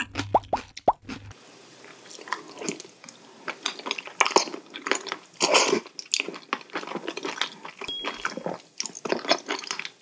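Close-miked eating sounds of raw sea cucumber intestines and sashimi being chewed and bitten: a quick, irregular run of sharp smacks and crunches with brief wet noises between them.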